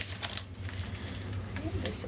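Rustling and crinkling of a clear plastic bag with a packaged inflatable float inside, with a quick cluster of clicks at the start, as it is picked out of a cardboard box.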